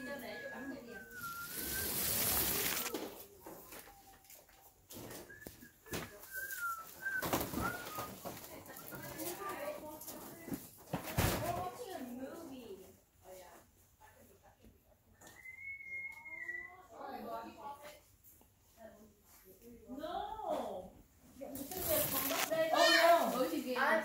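Indistinct chatter of children and adults, with a couple of brief bursts of rustling and a sharp click partway through.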